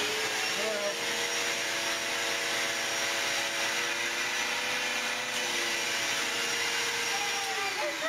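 Vacuum cleaner running steadily with its motor whine while its hose sucks a girl's hair in so a hair tie can be slipped over it as a ponytail. The whine drops in pitch near the end before the sound cuts off.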